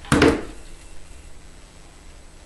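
A single short knock of craft materials being handled on the work table, then faint room tone.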